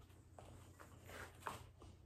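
Near silence: room tone with a few faint soft ticks and rustles, the clearest about a second and a half in.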